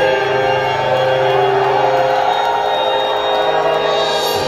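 A live metal band's keyboard holding sustained organ-like chords through the PA, with the drums dropped out for a steady held passage.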